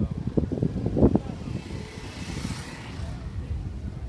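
A small motorbike passing close by, its noise swelling and fading about two seconds in, over steady low wind rumble on the microphone of a moving bicycle.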